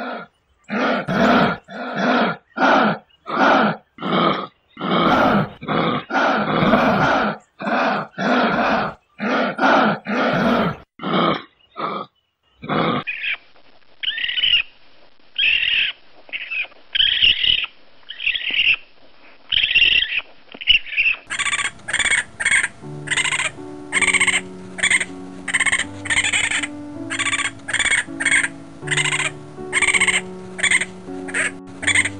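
Repeated short, rough animal calls, about two a second, for the first dozen seconds; then a run of thinner, higher-pitched calls. About two-thirds of the way through, music with a steady beat and held low notes comes in and carries on to the end.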